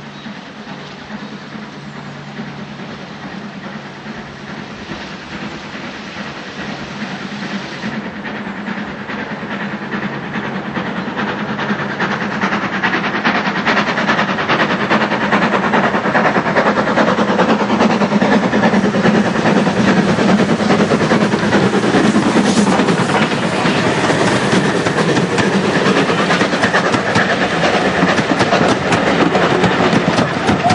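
Midland Railway 4F 0-6-0 steam locomotive No. 43924 working a passenger train. Its rapid exhaust beats grow steadily louder as it approaches over the first half. The train then stays loud as it passes close by, with the coaches' wheels clattering over the rail joints.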